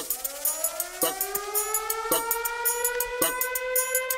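Siren sound effect in a dance remix, one tone slowly rising in pitch and levelling off. Under it a beat of sharp hits about once a second and fast hi-hat ticks.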